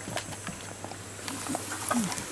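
A dog's claws ticking and tapping irregularly on wooden deck boards as it moves about close by.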